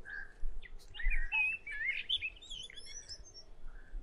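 Songbirds chirping and twittering, a busy run of short warbling notes about a second in, over a faint low rumble.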